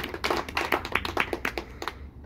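Small audience applauding, with scattered, irregular hand claps that stop just before the end.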